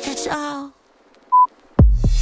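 Workout background music ends about a third of the way in. A single short, high electronic countdown-timer beep follows, and near the end a new dance track with a heavy kick-drum beat starts.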